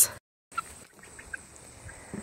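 A few faint, short peeps from three-week-old Cornish Cross broiler chicks. The sound drops out briefly near the start.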